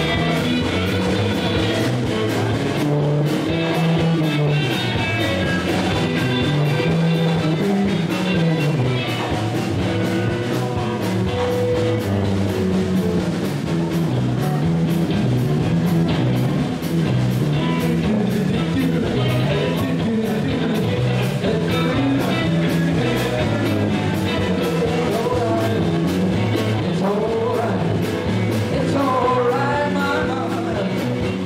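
Live rock band playing a steady jam: electric guitar, electric bass and drum kit together, with a moving bass line under guitar lines.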